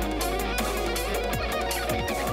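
Electric guitar playing notes over a backing track with bass and drums, the kick drums falling in pitch on each hit.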